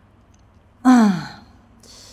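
A woman's short voiced sigh, falling in pitch, about a second in, followed by a softer breathy exhale near the end.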